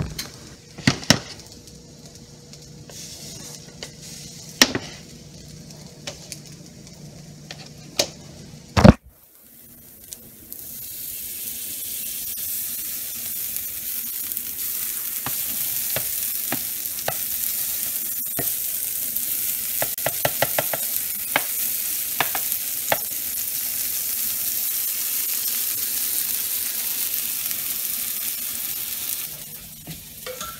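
Potato pancakes sizzling in butter in a hot frying pan: a steady sizzle sets in about ten seconds in and holds, dotted with small pops. Before that, quieter frying under a few sharp clicks and knocks, the loudest a little before the sizzle swells.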